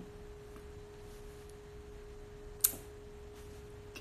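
Faint room tone carrying a steady single-pitch hum, with one sharp click about two and a half seconds in.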